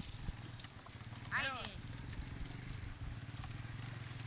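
Small dirt-bike engine idling steadily with a low, even putter, and a short high call that falls in pitch about a second and a half in.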